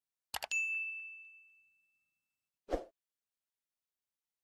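Subscribe-button sound effect: a quick double mouse click, then a single bell ding that fades over about a second and a half, and a short soft pop near the end.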